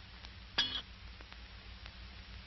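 An empty .30 cartridge case ejected from an M1 Garand's receiver gives a single metallic clink with a brief ring about half a second in.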